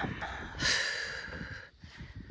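A person taking one deep breath, an airy rush that starts about half a second in and lasts about a second.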